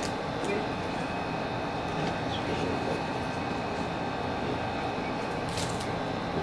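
Steady room noise, an even hiss-like hum with no clear pitch, with a few faint clicks from handling about half a second in and again near the end.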